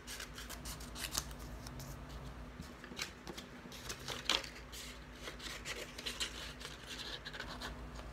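Scissors cutting through paper: scattered snips with paper rustling between them, the sharpest cuts about three and four seconds in.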